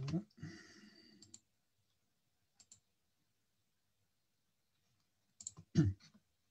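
A few sharp clicks in a quiet small room: a pair about a second and a half in, a faint pair near the middle, and a cluster near the end ending in a louder low knock. A short voice sound trails off right at the start.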